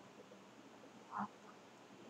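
Near silence: faint room tone, broken once about a second in by a single brief short sound.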